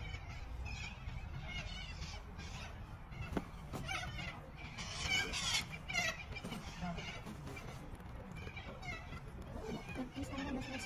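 Faint, distant talking from a group on an open field, with birds calling and a low wind rumble on the microphone; the loudest calls come about five to six seconds in.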